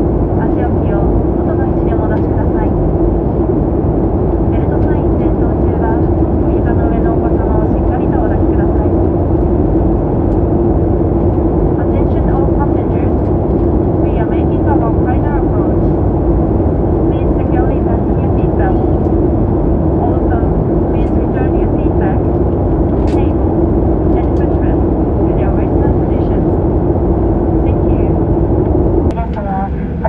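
Jet airliner's engine and airflow noise heard inside the cabin: a loud, steady rush with a constant low hum running through it, easing off shortly before the end.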